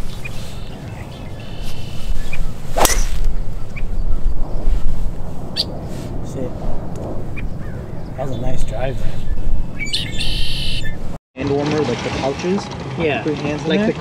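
A driver striking a teed golf ball: one sharp crack about three seconds in, over steady wind rumble on the microphone.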